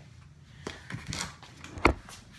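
Scattered knocks and rustling as a plastic bucket is handled, then a single sharp thump near the end as the phone filming falls over.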